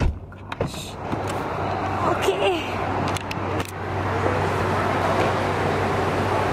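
A thump at the start, then the steady low hum of idling vehicle engines, with a brief murmur of voices.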